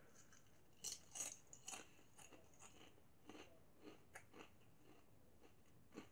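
Faint crunching of kettle-cooked potato chips being chewed: a few sharp crunches in the first two seconds, then fainter, sparser ones dying away.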